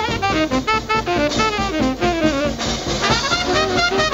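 Big band swing: a saxophone solo of quick phrases with bending, sliding notes over drums and rhythm section. The band's sound grows fuller near the end.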